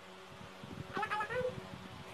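A short, high cry about a second in whose pitch bends up and down like a meow, over faint knocks and rustling.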